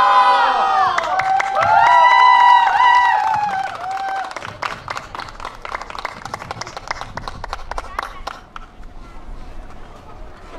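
A group of children's voices shouting and chanting a cheer together, with held notes for about four seconds. Then rapid, scattered sharp claps run on more quietly.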